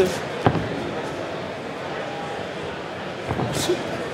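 Arena crowd murmur around a boxing ring, broken by a sharp smack about half a second in and a couple of thuds with a short hiss near the end, typical of gloved punches landing and a boxer's sharp exhale.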